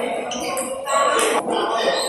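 Table tennis ball clicking off bats and the table during rallies, several sharp clicks about a second apart, over a bed of voices in the hall.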